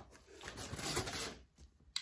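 Vinyl LP jackets in plastic outer sleeves rustling and sliding as they are handled, in one soft swell lasting about a second, with a few faint clicks.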